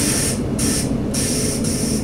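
Class 842 diesel railcar running over a low engine rumble, with short bursts of air hissing about twice a second, as from the air brakes venting while the train draws along a station platform.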